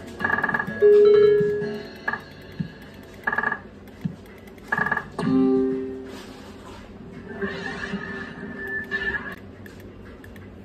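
Electronic sound effects from a bar video slot machine. Short chiming bleeps sound as the reels stop, with a loud held tone about a second in. A longer jingle plays in the second half as three scatter symbols land and trigger the bonus round.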